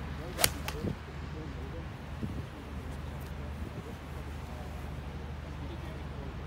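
Golf iron shot: one sharp crack of the clubhead striking the ball off the turf about half a second in, with a fainter click just after it, over a steady low outdoor background.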